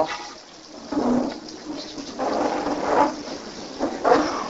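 An audience turning the thin pages of their Bibles, a soft, even papery rustle with a few swells.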